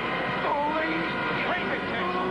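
A person's voice making wordless sounds, with pitch sliding up and down, over a steady background tone.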